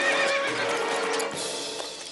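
A horse whinnying: one long, wavering call that fades about a second in, over background music.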